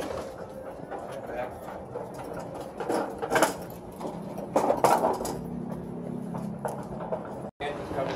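Metal platform hand truck rolling and rattling over the floor, with sharp clatters about three and five seconds in and a steady low rumble afterwards. Indistinct voices run underneath.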